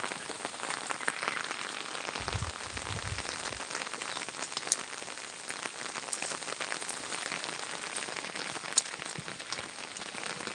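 Steady rain falling, with sharp drop hits scattered through it. A brief low rumble about two seconds in.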